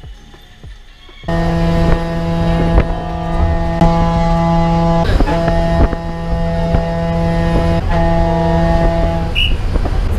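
Inside a moving public bus: engine and road rumble with a loud steady pitched tone held at one pitch for about eight seconds, broken briefly twice, which stops shortly before the end.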